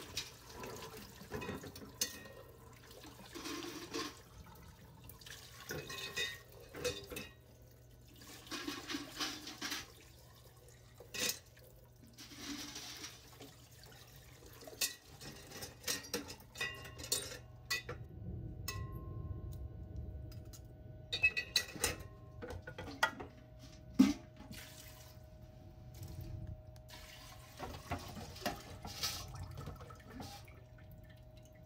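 Water poured in uneven splashes and trickles from a stainless steel pot into a tall glass beaker in a sink, with granulated gold–silver inquart alloy scraped and rinsed in by hand. Sharp clinks and knocks of metal against glass come throughout, loudest a little past the middle.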